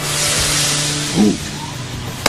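Soft background underscore music holding a steady low drone, with a rushing hiss over the first second and a brief vocal sound just past the middle.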